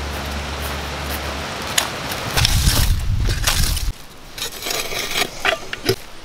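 Wind buffeting the microphone with a low rumble for about four seconds, stopping abruptly. Then a few short scrapes and clicks of a shovel and hands working in the ash and dirt of a campsite fire ring.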